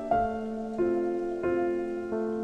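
Solo piano playing a slow, gentle waltz, with a new note or chord struck about every two-thirds of a second over a sustained low note.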